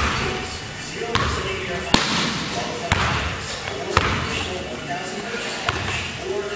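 A basketball dribbled on a hardwood gym floor, with sharp bounces roughly once a second echoing in a large hall, heard under a voice.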